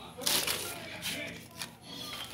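Plastic sheeting crinkling as it is handled, with a short, louder rustle about a quarter of a second in.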